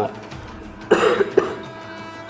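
A man coughing: one harsh cough about a second in, followed by a shorter, weaker one.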